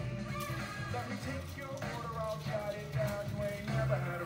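Background music: a song with a singing voice over a steady beat.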